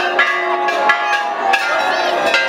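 Temple bells rung again and again, several strikes a second, each strike ringing on so the tones overlap, with crowd voices faintly beneath.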